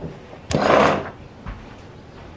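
A drawer sliding: a sharp start about half a second in and a short scraping run of about half a second, then a small knock near the end.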